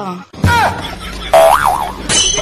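Comic sound effect added in the edit: a springy pitched tone that wobbles up and down over the second half. It comes after a sudden loud onset with a short falling tone about half a second in.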